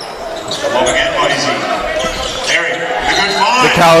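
Live court sound of a basketball game in a large gym: the ball bouncing and players' and spectators' voices shouting, the shouting swelling toward the end as a player scores at the rim and draws a foul.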